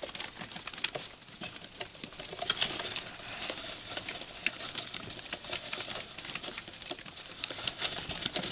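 Young rats' claws scratching and pattering on a cardboard box as they clamber over and through it: a busy run of irregular small clicks and scrabbles.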